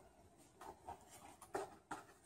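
Quiet room with faint rustling and two short soft clicks in the second half, from small handling movements.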